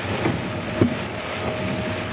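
Rain falling on a car, with a few sharper drop ticks, and a faint steady tone from a distant outdoor tornado warning siren underneath.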